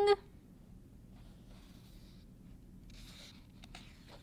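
Faint soft paper rustles and small clicks of hands handling the pages of a hardback picture book, just after a loud held note cuts off at the very start.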